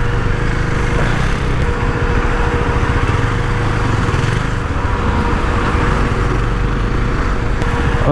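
A KTM Duke 390's single-cylinder engine running steadily at low speed as the motorcycle filters through slow traffic, with a steady hiss over the engine note.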